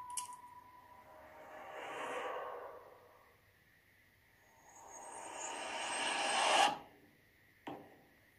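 Horror film trailer sound design. A steady tone fades out early, then a swelling whoosh rises and falls about two seconds in. A longer riser then builds for about two seconds and cuts off suddenly, followed by a single faint click.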